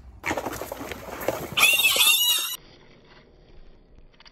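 A burst of rustling noise, then about one and a half seconds in a loud, shrill animal squeal with a wavering pitch, lasting about a second.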